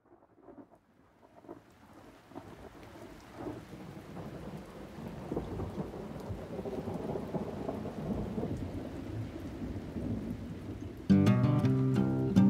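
A rumbling, hissing noise like rain and distant thunder fades in from silence and builds steadily. About a second before the end, louder music with plucked guitar chords comes in suddenly.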